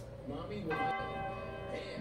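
A bell tolls once, coming in just under a second in. Its ringing tone holds steady with several overtones for over a second, over faint background music.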